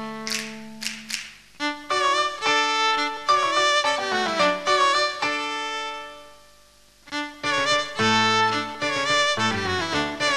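Electric violin bowing a melody in Carnatic style, with gliding, ornamented notes, over a recorded piano accompaniment. The music dies away almost to silence about six seconds in, then comes back at about seven seconds with low piano notes under the violin.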